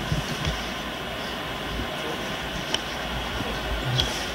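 Steady hiss and low rumble of an old camcorder's room sound in a quiet hall, with a few faint short clicks.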